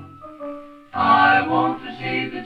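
Recorded song with singing and instrumental accompaniment: a held note fades out, a brief lull follows, and a new sung phrase begins about a second in.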